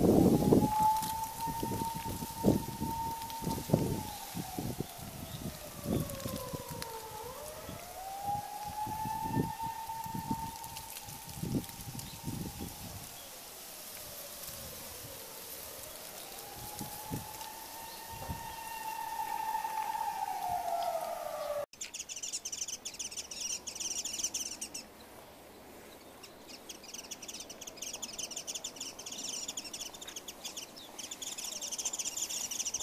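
A siren wailing, slowly rising and falling three times, over irregular low thumps and buffeting in the first half. About two-thirds of the way in it cuts off abruptly and a high, pulsing chirring takes over.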